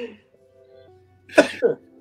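A man coughs sharply twice in quick succession, about a second and a half in, over faint steady background tones.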